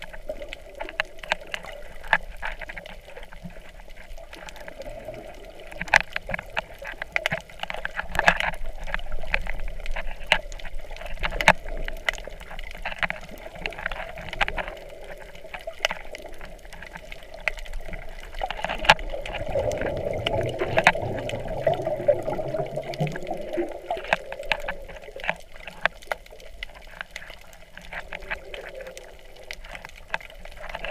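Underwater sound heard through a camera's waterproof housing on a coral reef: steady water noise with frequent sharp clicks and crackles. About two-thirds of the way through there is a louder rushing stretch lasting a few seconds.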